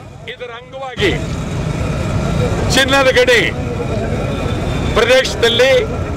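Steady low rumble of vehicle engines in the street, starting about a second in, with men's voices speaking loudly over it twice.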